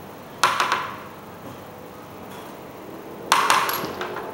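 Two short bursts of handling noise, with clinks, as lab glassware is handled on the bench: one about half a second in, the other near the end.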